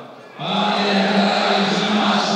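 Male solo voice singing the club anthem into a microphone over the stadium PA: a short breath at the start, then a long held note from about half a second in.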